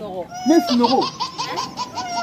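A high-pitched voice laughing loudly, starting about half a second in.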